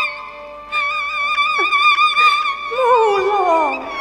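Cantonese opera accompaniment on bowed strings: a held, wavering note with vibrato enters about a second in, and near the end a second melody line slides downward.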